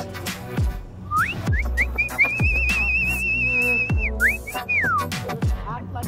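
A person whistling at zoo animals to try to wake them: a few short rising swoops, then a long warbling note, then a falling glide. Under it runs background music with a deep sliding bass beat.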